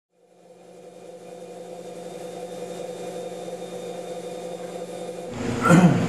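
A steady low hum with a few held tones, fading in slowly. About five seconds in it gives way to louder workshop room noise with a short gliding sound.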